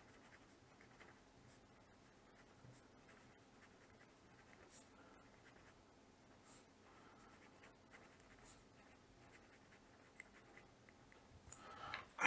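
Very faint scratching of a pencil writing on paper, in short irregular strokes.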